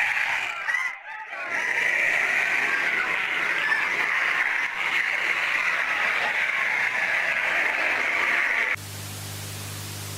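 Lo-fi, static-laden audio from an analog horror tape: a steady hiss with faint distorted voices in it, dropping out briefly about a second in. Near the end it cuts suddenly to a quieter, steady low hum.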